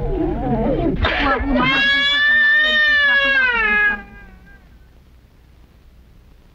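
A Wixárika (Huichol) man's chanting voice, ending in one long held high note that swells and sinks slightly and breaks off sharply about four seconds in.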